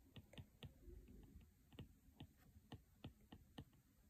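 Faint, irregular clicks of an Apple Pencil tip tapping the iPad's glass screen as short strokes are drawn, a few per second with a brief pause after the first second.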